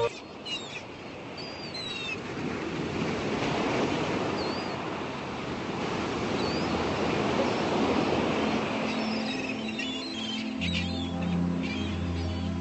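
Ocean surf swelling and ebbing, with a few short bird chirps over it. Low sustained music notes come in near the end.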